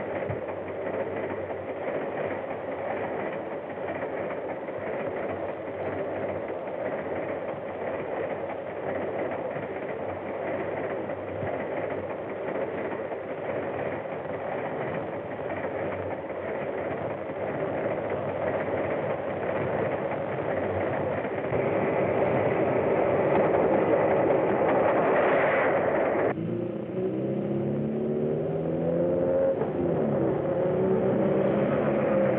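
Steady rushing rumble of a train in motion, heard from inside the carriages, growing louder toward the end. It cuts off abruptly a few seconds before the end and gives way to a motor-car engine changing pitch.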